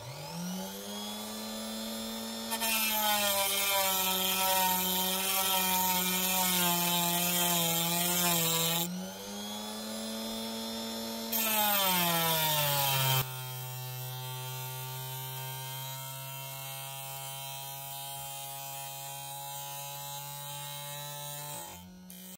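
Dremel rotary tool spinning up and running a small cut-off disc that cuts into an opal. Twice the disc grinds into the stone with a harsh hiss while the motor's hum sags in pitch under the load, once for several seconds and once briefly. After that the motor runs at a lower, steady hum with no cutting and stops near the end.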